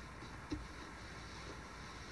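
Chip-carving knife cutting a thin line into a wooden board: a sharp tick about half a second in and a fainter one near 1.5 s, over a steady hiss.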